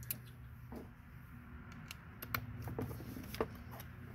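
Scattered small metal clicks and clinks as a 7mm deep socket is fitted onto a cordless drill's extension, over a faint low hum.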